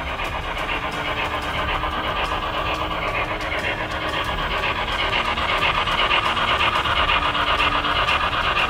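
HO-scale MTH Norfolk & Western J Class model steam locomotive running, its ProtoSound 3.0 sound system giving rapid steam chuffing that grows louder as the train passes.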